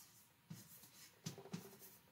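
Chalk writing on a blackboard, faint: scratching strokes with about four sharp taps of the chalk against the board.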